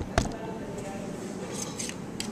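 A single sharp knock a fraction of a second in, as the camera is set down and steadied on the bench, followed by quiet room noise with a few faint rustles near the end.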